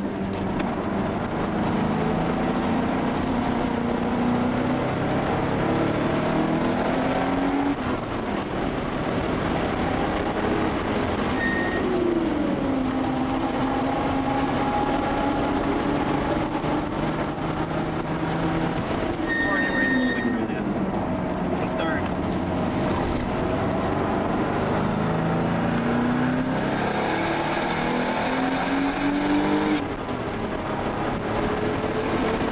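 The air-cooled turbocharged flat-six of a 1979 Porsche 930 Turbo at full track pace, heard from inside the cabin. The revs climb for several seconds, fall away, hold steady through a long stretch, drop again, then build once more near the end. Brief high beeps sound twice.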